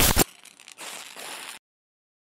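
A short, loud burst of static-like glitch noise from an editing transition effect. It is followed by faint hiss that cuts off to dead silence about a second and a half in.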